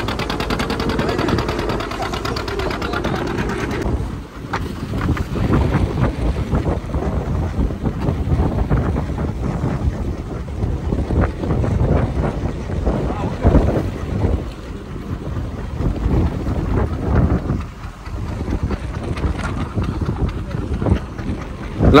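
Wind buffeting the microphone over the rush of water along a wooden fishing boat under way at sea, with the boat's motor running underneath.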